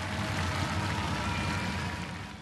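Studio audience applauding just after the song ends, a dense, even wash of clapping.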